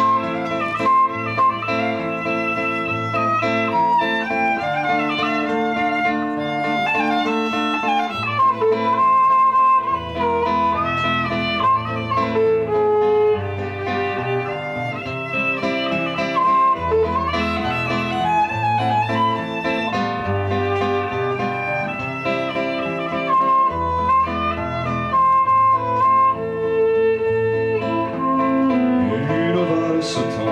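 Instrumental passage: a violin plays a flowing, gliding melody over a nylon-string classical guitar accompaniment with changing bass notes.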